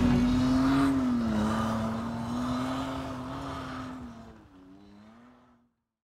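Off-road truck's engine running as it pulls away, its pitch wavering slightly. The sound fades out steadily and ends about five and a half seconds in.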